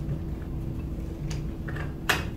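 Room tone with a steady low hum, and a few faint light clicks of lab equipment being handled, the clearest about a second and a quarter in.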